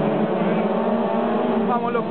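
Several midget race car engines running together as the pack races through a dirt-track turn, a steady multi-engine drone.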